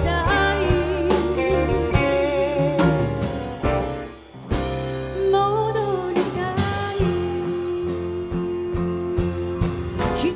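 Live band playing: a woman singing over upright bass, drum kit, electric guitar and piano. The music dips briefly about four seconds in, and a long steady note is held through the last few seconds.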